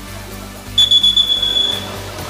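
A high-pitched whistle blast, one steady tone lasting about a second, starting a little before the middle, over steady background music.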